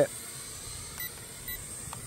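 Two short electronic beeps about half a second apart from a toy drone's remote controller, the signal that flip mode has been engaged, over a quiet steady background hiss.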